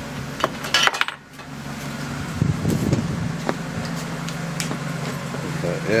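Hard items such as bottles and cans clinking and knocking on a shelf as someone rummages for a flashlight, with a cluster of sharp clicks in the first second and a few more later. A steady low hum from the car's engine idling runs underneath and cuts out briefly about a second in.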